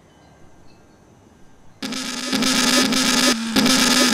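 Faint hiss, then about two seconds in a sudden loud, harsh, distorted blast with one steady low pitch under it, held to the end with a brief dip shortly before.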